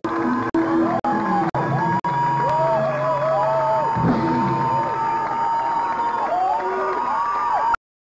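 Live hard rock band playing loud, with a held high note that repeatedly bends down and back, over a cheering crowd. The sound breaks into short silent dropouts about twice a second at first, then cuts off abruptly near the end.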